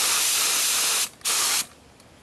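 Gravity-feed HVLP spray gun spraying acetone: a steady hiss of atomizing air that cuts off about a second in, followed by one short second burst before it stops.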